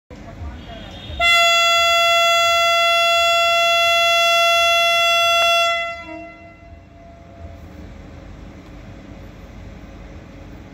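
Horn of a WAP-5 electric locomotive: one long, steady blast that starts suddenly about a second in, holds for about four and a half seconds, then cuts off and fades.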